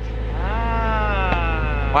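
1999 Porsche Boxster's flat-six engine revved once over its idle: the pitch climbs quickly, then sinks slowly as the revs settle.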